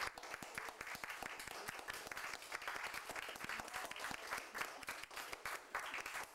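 Audience applauding, a steady spatter of many hand claps.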